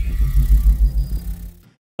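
Edited transition sound effect: a deep bass rumble that pulses, with a thin hiss above it, fading out about a second and a half in.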